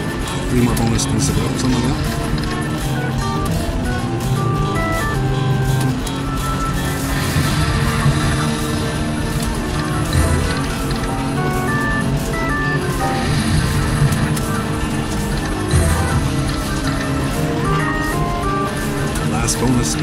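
Video slot machine playing its free-games bonus music: a busy melody of short, stepping notes over a steady low bed, running without a break while the reels spin.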